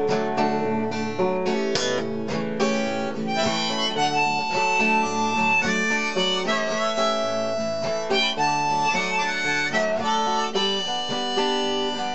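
A blues harmonica break, with some long held notes, played over steady acoustic guitar accompaniment.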